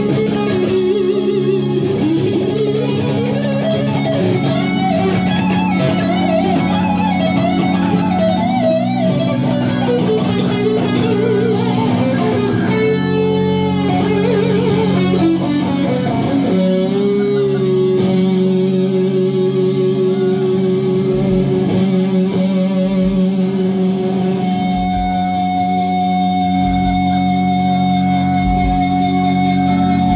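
Live rock band: an electric guitar plays a lead line with wide vibrato and bends over sustained keyboard chords. In the last few seconds it settles into long held notes, with a few low thumps underneath.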